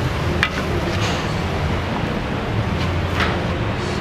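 Steady kitchen noise, a low rumble with hiss under it, with a few light clicks of a utensil against the pan.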